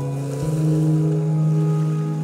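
Slow ambient new-age music: sustained pad and string chords over a low bass note, moving to a new low chord about half a second in, with a faint wash of lake waves beneath.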